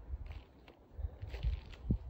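A few soft footsteps on gravel and sandstone: short low thumps, unevenly spaced, with faint crackles of grit underfoot.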